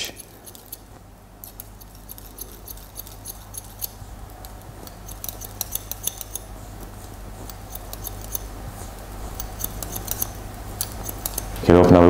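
Hairdressing scissors snipping through hair held on a comb, a run of many small crisp snips that come thicker in the second half, over a low steady room hum.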